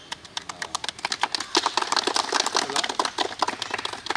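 A group of people clapping, many quick claps that thicken about half a second in, with a few voices mixed in.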